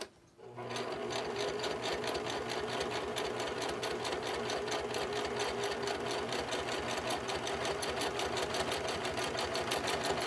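Simplicity domestic sewing machine starting about half a second in, then running steadily as it stitches a seam through fabric, with a fast, even stitch rhythm.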